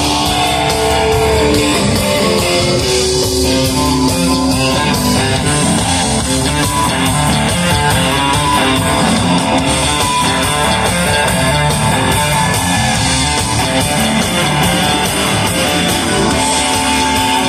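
Live electric blues band playing an instrumental passage: electric guitars over bass and drums, with a steady beat.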